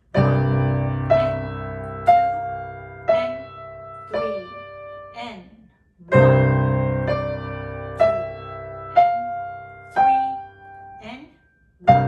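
Piano played slowly: a low open-fifth C–G chord in the left hand is held under a right-hand melody of single notes, about one a second, each fading away. The phrase starts again with a new low chord about six seconds in.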